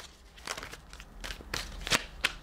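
Tarot cards being handled: a few soft rustles and clicks as a card is drawn from the deck and laid down, the sharpest one near the end.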